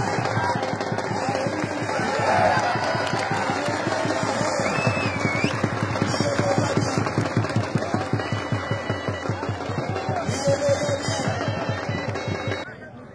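Fast, steady drumbeat, about four to five beats a second, with voices shouting over it.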